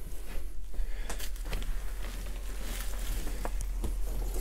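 Quiet handling and movement noise with a few soft clicks, over a steady low hum.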